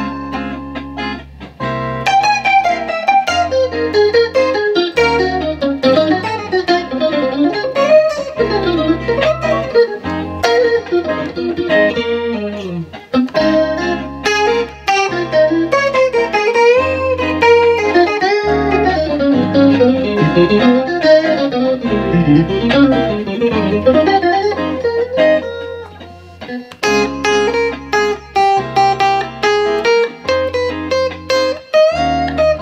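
Electric guitar playing single-note melody lines with bends and vibrato over a looped chord backing track of seventh-chord changes, the guitar run through a chorus effect.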